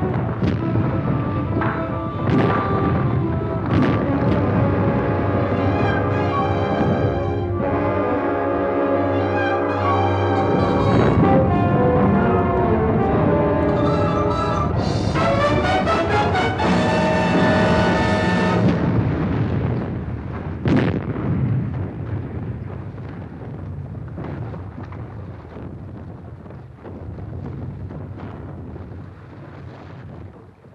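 Dramatic orchestral music with brass, laid over the booms and crashes of a cave roof collapsing in a rockfall. The music swells through the middle, then dies away, with one last sharp crash about 21 s in and a fading rumble after it.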